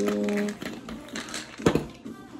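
Small plastic clicks and light rattling as a supplement bottle's cap is worked open and capsules are shaken out, with a sharper knock near the end.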